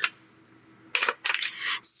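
A few small, light clicks and knocks of markers and paper being handled on a desk, starting about a second in after a near-silent moment.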